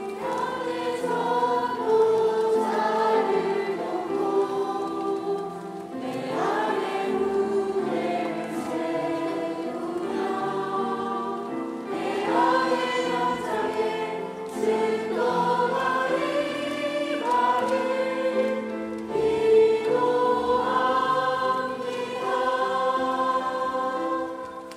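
A mixed church choir singing slow, sustained chords in phrases of about six seconds each: a closing choral response sung just after the benediction.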